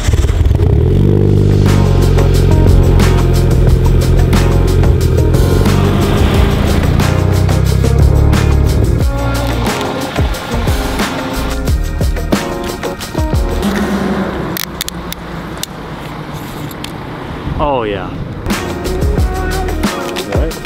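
Mitsubishi Lancer Evolution VIII's turbocharged four-cylinder engine running loud and steady for the first nine seconds or so, then stopping. Background music plays throughout.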